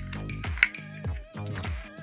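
Background electronic music with a steady beat of about two low drum hits a second under held notes and a wavering lead tone. A single sharp click sounds just over half a second in.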